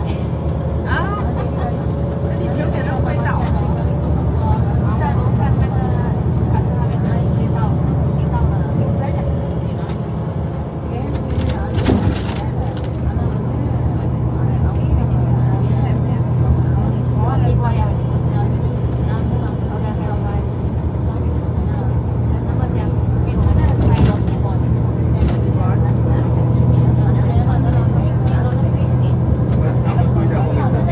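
Inside a moving bus: a steady engine and road drone, with the engine note changing about twelve seconds in and a couple of short knocks. Passengers talk faintly in the background.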